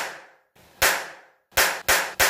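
Four sharp cracks made by hand, unevenly spaced, each with a short echo that dies away.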